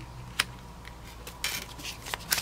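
Light handling sounds of cards being moved on a tabletop: one sharp click about half a second in, then a few faint ticks and rustles.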